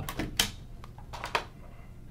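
A few scattered light clicks and knocks, handling noise in a small room.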